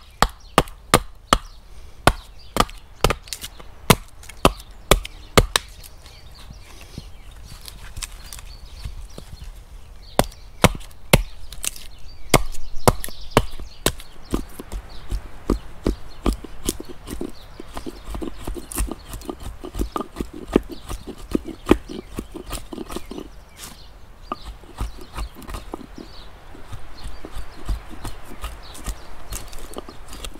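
Hatchet knocking into a thin wooden board as it is split off, sharp knocks about twice a second for the first few seconds. Later comes a quicker, lighter run of clicks and scraping as a blade is worked across the board's surface to shave it smooth.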